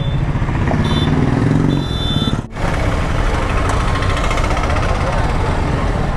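Sport motorcycle engine running while riding in town traffic, with wind and road noise on a helmet microphone. The sound breaks off briefly about halfway through.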